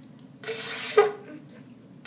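A shofar blown by a child: a short, weak, airy note with a faint steady pitch about half a second in, ending in a brief louder blip around one second in.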